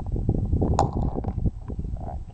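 Handling noise from a hand-held camera: a steady low rumble full of small rubs, clicks and knocks as it is moved about, with one sharper click a little under a second in.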